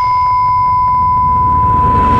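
Television test-card tone: a steady, high-pitched beep held on one pitch over a loud hiss of static. It is the tone that goes with a no-signal test pattern.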